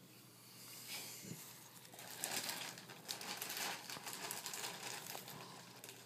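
Soft, irregular rustling and crinkling of gloved hands working close to the microphone, busier from about two seconds in.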